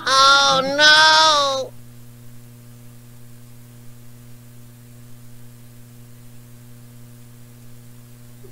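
A voice gives two short drawn-out pitched sounds, like hummed or sung notes, in the first second and a half. A faint, steady electrical hum follows and runs on.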